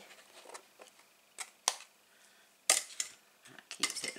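A few short, sharp scissor snips spaced out, the loudest a little past the middle, as a small piece is trimmed off a papercraft envelope.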